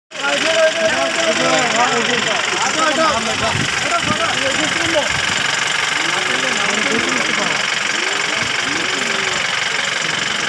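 Several people talking over one another, with a steady rushing noise underneath.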